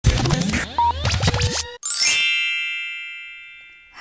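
Intro sound effects for an animated logo: a quick run of clicks, pops and swooping tones for about a second and a half, then one bright chime that rings out and fades over the next two seconds.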